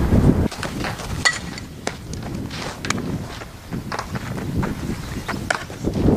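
Wind rumbling on the camera microphone during the first half-second and again at the very end, with scattered short sharp clicks and knocks between, among them a softball smacking into a fielder's glove about a second in.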